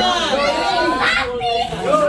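Several people's excited voices overlapping, high-pitched calls and chatter from a crowd with no single clear speaker.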